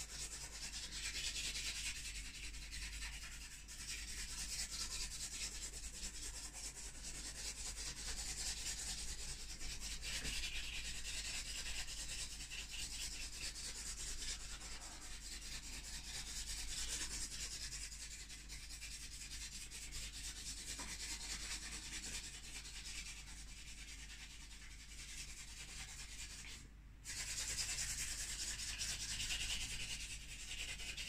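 Charcoal stick scratching over a chalk-pastel layer in fast back-and-forth scribbling strokes, a continuous scratchy hiss with one short break about 27 seconds in.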